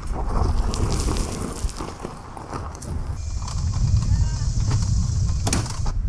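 Nissan Leaf rolling along a rough dirt path with its doors off: a low rumble of tyres over the ground with irregular knocks and rattles, and no engine note. A steady high hiss comes in about halfway.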